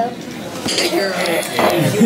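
Dishes and cutlery clinking at a dining table, a few short sharp clinks over voices.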